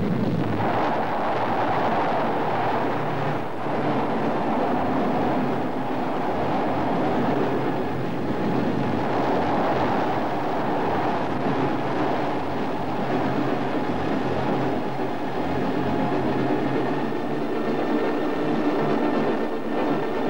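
Space Shuttle lift-off: loud, steady noise of the rocket engines and solid rocket boosters at launch.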